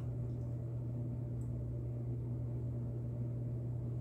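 A steady low hum with a faint even hiss and no distinct events.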